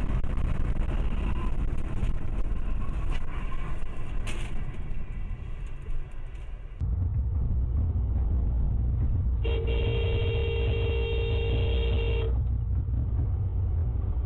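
Road and engine noise heard from inside a moving car, changing abruptly about seven seconds in to a heavier low rumble. Over it a car horn sounds one steady blast of about three seconds.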